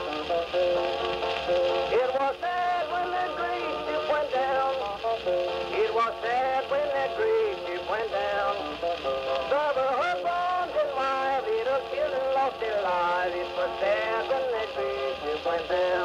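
Late-1920s Edison Blue Amberol cylinder record playing on a cylinder phonograph: an instrumental passage of an old-time country song between sung verses, a wavering melody line over steady accompaniment.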